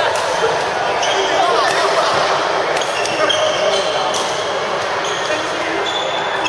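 Busy badminton hall: scattered racket strikes on shuttlecocks and brief sneaker squeaks on the court floor from several courts, over a steady wash of distant chatter, echoing in the large hall.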